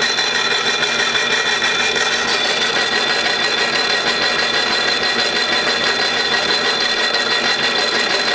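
Worn bimetal hole saw turning slowly in a milling machine, grinding a silicon carbide and water slurry against the bottom of a Pyrex glass dish under light, steady feed pressure. A steady gritty grinding with several high ringing tones held throughout.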